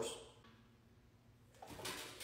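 Quiet room tone, then near the end a brief rustle with a few light clicks as the rotisserie's stainless motor unit is handled and brought to its rack stand.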